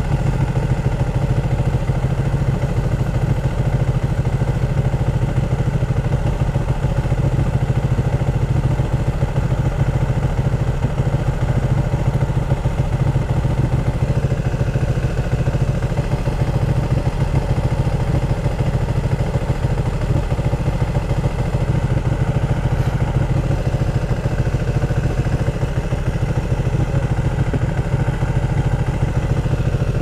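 Ducati 1299 Panigale's Superquadro V-twin idling steadily while the bike waits at a stop.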